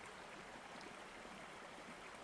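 Faint, steady running water, a gently flowing stream.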